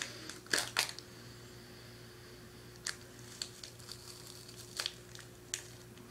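A plastic candy-bar wrapper crinkling in short bursts during the first second, then a few faint, scattered crackles over a low steady hum.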